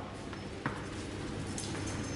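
A small ball hitting a hard tiled floor: a single sharp tap about two-thirds of a second in, over a low steady hum.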